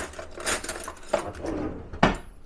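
Metal cutlery clinking in a kitchen drawer as a hand rummages through it and picks out a fork, a handful of separate clinks.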